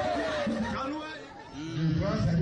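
Voices talking and chattering, the words not made out; a lower voice comes in near the end.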